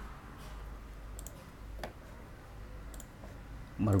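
A few faint, scattered clicks from the computer's keyboard and mouse as a new notebook cell is set up, over a low steady hum. The clearest click comes a little under two seconds in.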